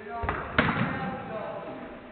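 A football struck hard: two sharp thuds about a quarter second apart, the second the louder, ringing on in the echo of the large indoor hall. A player's short shout comes just before.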